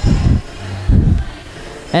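Dance steps on a wooden floor: two dull thuds about a second apart.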